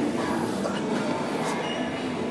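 Steady background noise of a gym, with a faint high tone near the end.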